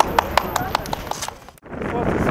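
A rapid, evenly spaced series of sharp taps, about five or six a second, over low street rumble. The taps stop about a second and a half in, and the sound cuts off abruptly.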